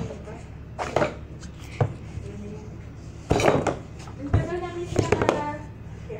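A small box handled on a tabletop, knocking and tapping against it several times at uneven intervals, with brief voice sounds in between.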